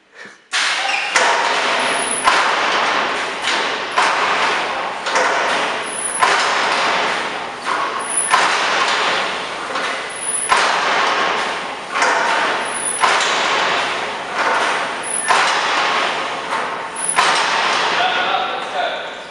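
Automatic livestock draft gate swinging open and shut again and again at speed: a steady rushing noise broken by a metallic knock about once a second, with faint high pings every couple of seconds.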